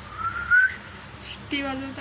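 A person whistling one short note that rises in pitch, followed about a second and a half in by a short, held vocal sound at a steady pitch.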